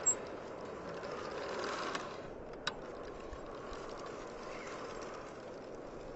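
Mountain bike rolling across grass: faint, steady tyre and wind noise, with a brief high beep at the very start and a sharp click about two and a half seconds in.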